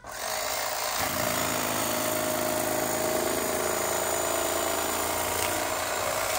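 Old electric carving knife running steadily, its motor and reciprocating blades cutting through a block of styrofoam-type foam.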